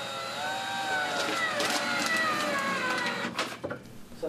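Cordless drill/driver whining as it drives a screw into the wooden stand to mount a C-clip, its pitch rising slightly and then dipping. The motor stops about three and a half seconds in, followed by a few light clicks.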